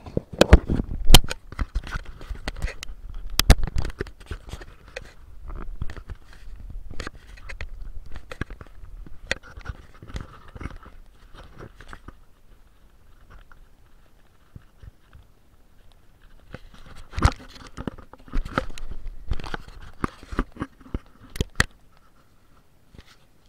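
Irregular close-up crackling and crunching clicks, denser near the start and again near the end, with a quieter stretch in between.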